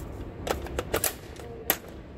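Several sharp metallic clicks as a .22 LR magazine is handled and pushed into the magazine well of an AR-style rifle fitted with a CMMG .22 LR conversion kit, the loudest click near the end.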